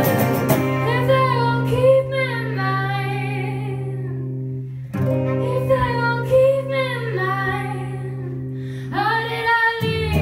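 Live song: a female voice singing two slow, wavering phrases over held acoustic guitar chords. The chord is struck again about five seconds in and once more near the end.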